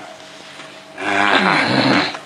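A person's voice: a loud, breathy vocal sound with a falling pitch, starting about a second in and lasting about a second.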